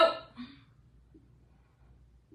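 The end of a woman's spoken word, then a single short vocal sound from her, an exertion breath, about half a second in; after that, near silence with faint room tone.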